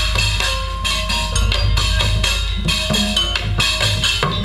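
Live organ dangdut music through the stage PA: a drum kit and hand percussion keep a steady, busy beat under electronic keyboard lines.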